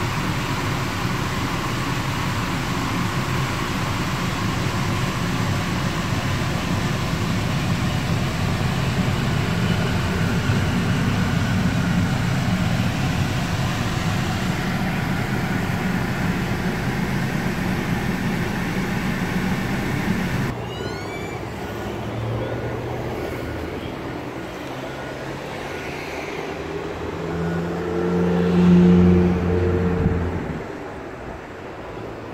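Steady rushing noise inside the cabin of a 2015 Nissan X-Trail with its four-cylinder engine running. The rush cuts off suddenly about two-thirds of the way through, leaving a lower engine hum that swells louder near the end.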